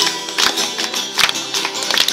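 Two acoustic guitars strummed in a steady rhythm, with hand clapping.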